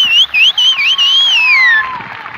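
Audience whistling in approval at the end of a song: loud, high, sliding whistles that swoop up and down and finish with a long falling whistle, over faint crowd noise.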